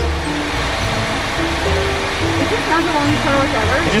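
Automatic car wash spraying water onto the rear windshield, heard from inside the car as a steady hiss, with music playing over it.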